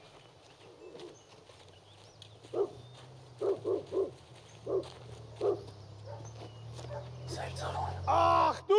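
A low, steady drone under a string of short, sharp, distant barks that come at uneven intervals. The drone swells slowly toward the end.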